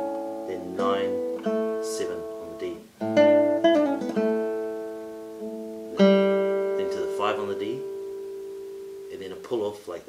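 Nylon-string classical guitar playing a slow phrase of plucked notes and chords. It opens with quick pull-offs down the G string, and a chord about 6 seconds in rings out and fades slowly.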